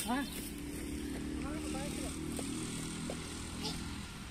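A steady low engine drone, easing off near the end, under faint children's voices.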